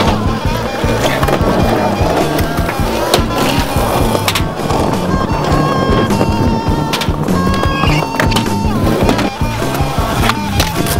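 Background music playing over skateboard wheels rolling on concrete, with a few sharp knocks from the board.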